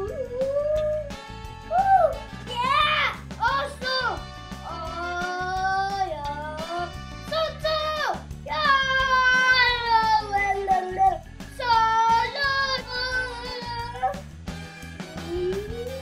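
Background music with a steady beat, and over it a child's voice in long, wavering cries that slide down in pitch, several of them one after another.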